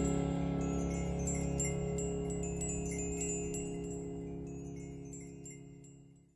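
The final held chord of a Chinese ballad, fading steadily away, with chimes tinkling over it.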